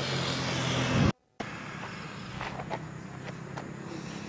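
Background noise of distant traffic picked up by a wireless lapel microphone, with a steady low hum. The sound cuts out completely for a moment about a second in, then returns quieter with a few faint ticks like footsteps on gravel.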